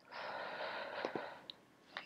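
A person's noisy breath close to the microphone, lasting about a second and a half, followed by a few light clicks of a computer mouse.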